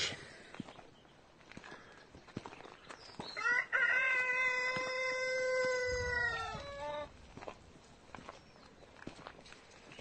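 A rooster crowing once, a single long call lasting about three and a half seconds, starting a few seconds in.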